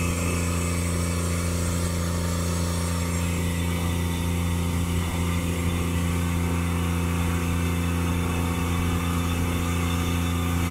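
Grain vac running steadily, conveying shelled corn through its hoses into a grain trailer: an even, loud machine drone with a rush of air and grain.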